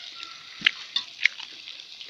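Chopped beef, lamb and onions sizzling in a large cast-iron kazan as a steady hiss, with a few sharp clicks, the loudest about two-thirds of a second in.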